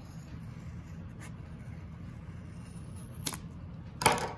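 Scissors snipping through wound yarn loops to free a pom-pom: a faint snip about a second in and a sharper click about three seconds in, over a steady low hum.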